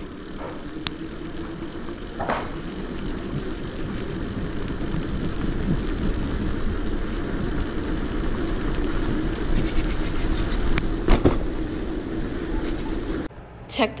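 Bicycle riding on a wet road in the rain: a steady rush of tyre and wind noise with a low hum, slowly growing louder, with a few sharp clicks.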